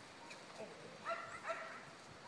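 A dog giving two short, high-pitched barks about half a second apart, a second or so in, with a faint whine just before.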